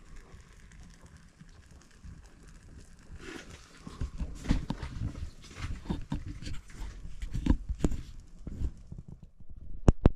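Irregular knocks, thuds and rustling as someone moves about inside a fabric ice-fishing shelter, starting after a few seconds of low rumble and ending in a sharp click.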